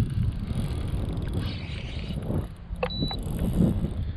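Wind rumbling on the microphone on an open boat, with a single click and a short high beep about three seconds in.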